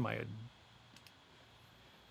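A single faint computer mouse click about a second in, against quiet room tone.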